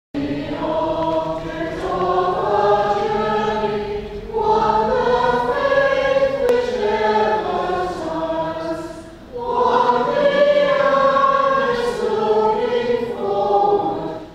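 A choir singing a slow, sustained melody in three long phrases, with short breaks between them.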